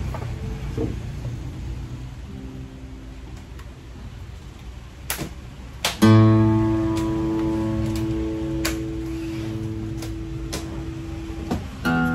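Vintage Japanese Morris 30-series dreadnought acoustic guitar being tried out. A few soft notes and two sharp clicks come first. About halfway in, a full chord is struck loudly and left to ring, fading slowly, and a fresh chord is struck near the end.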